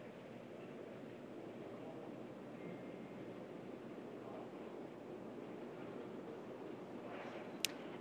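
Faint, steady hiss of background noise with no distinct source, broken by a single short click shortly before the end.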